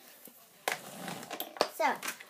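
Loose wax crayons clattering and rattling in a plastic tub as a hand rummages through them, with a sharp click about a second and a half in.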